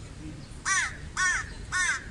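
A crow cawing three times in quick succession, each caw harsh and about a fifth of a second long, roughly half a second apart.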